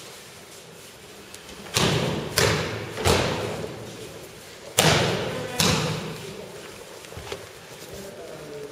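Aikidoka landing breakfalls on tatami mats: five loud slapping thuds in about four seconds, three close together and then two more, each trailing off in the hall's echo.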